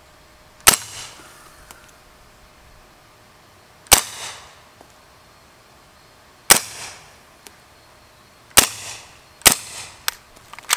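Five suppressed 9mm shots from an HK SP5 with an Omega 9K suppressor, firing 150-grain subsonic rounds. They are fired singly, one to three seconds apart, with the last two close together. Each has a short echoing tail, and most are fairly quiet while a couple carry a distinct pop.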